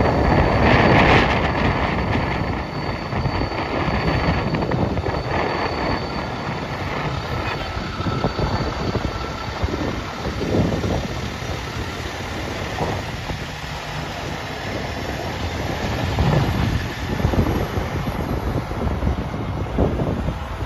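Fire rescue truck's engine running as it pulls out and drives away, loudest at the start, with wind buffeting the microphone.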